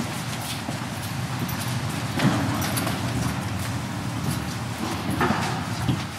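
Footsteps and small knocks of people walking across a backstage floor, over a steady background hiss of room noise.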